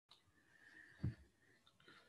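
Near silence: faint room noise, with one short, soft thump about a second in.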